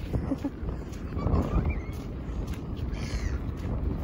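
Wind buffeting the microphone throughout, with a brief high-pitched cry about three seconds in.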